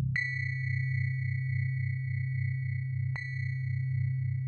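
Elektron Digitone FM synthesizer playing a steady high tone, two close pitches held together, over a low pulsing bass drone. The drum hits stop just as the high tone comes in, and the tone is struck again about three seconds in.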